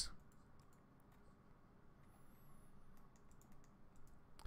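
Near silence with faint, scattered clicks of a computer keyboard and mouse.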